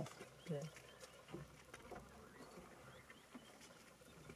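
Near silence: quiet open-air background with a few faint, short murmured words from people close by.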